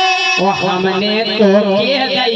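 A voice singing a Hindi folk song live over a steady harmonium accompaniment, with a wavering held note in the middle.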